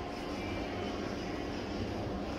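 A steady mechanical hum with a low rumble and a faint steady whine.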